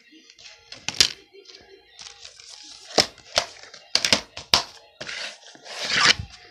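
Plastic DVD case being handled: a string of sharp clicks and clacks, several close together in the middle, with a rustle near the end.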